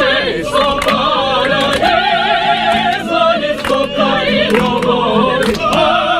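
Operatic singing by several voices together, sustained notes with wide vibrato, in an airliner cabin.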